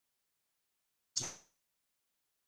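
Dead digital silence, broken once about a second in by a brief sound that starts sharply and fades within about a quarter of a second.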